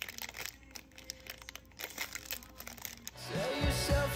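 Foil protein-bar wrapper crinkling and rustling in the hands in a series of light crackles. About three seconds in, background music with a steady beat starts.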